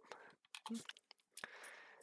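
Near silence in a pause of a voice recording, with a few faint mouth clicks and a soft breath.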